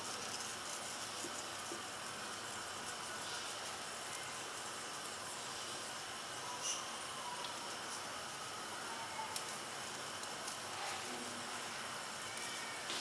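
Faint, steady background hiss with a few soft, isolated ticks.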